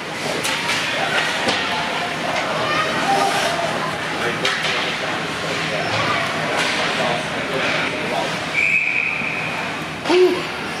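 Busy rink ambience during an ice hockey game: scattered voices and shouts from the crowd over a steady wash of noise, with a few sharp knocks of sticks and puck. Near the end a referee's whistle blows one steady note for about a second, stopping play.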